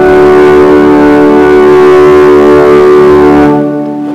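Organ holding a long sustained chord, released about three and a half seconds in, its sound then dying away in the room's reverberation.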